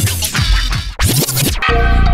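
Music with two loud record-scratch sweeps, then a song with a heavy bass line comes in about one and a half seconds in.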